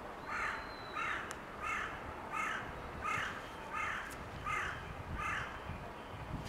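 A bird calling in an even series of eight short calls, about three calls every two seconds.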